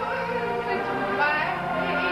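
A woman singing in an operatic style, with an ensemble accompanying her with low held notes beneath the voice.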